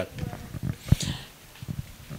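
Handheld microphone handling noise as it is moved into position: low bumps with a sharp click about a second in.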